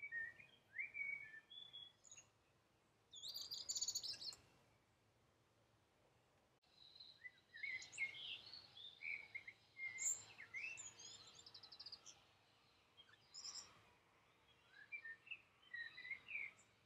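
Faint songbirds chirping and twittering in short, scattered phrases, with a brief higher trill about three to four seconds in and a pause of a couple of seconds before the chirping resumes.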